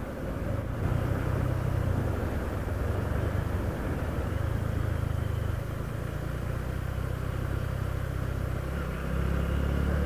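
Motorcycle engine running steadily while riding along an open road, heard from on board with wind and road noise. The engine note shifts a little a few times as the throttle changes.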